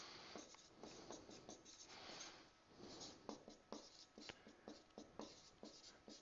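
Marker pen writing on a whiteboard: faint, short strokes and taps one after another as figures are written.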